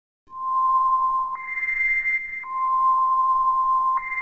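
A pure electronic tone held steady, switching between two pitches an octave apart: low at first, jumping up a little over a second in, dropping back down about halfway, and jumping up again at the very end.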